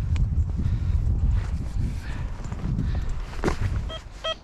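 Boots treading and scuffing over loose, dry clods of ploughed field soil as the hole is trodden shut. There is a low rumble throughout and one sharper knock about three and a half seconds in.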